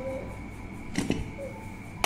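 Aluminium pressure cooker lid being turned and lifted off once the rice is cooked, with a couple of sharp metallic clicks about a second in.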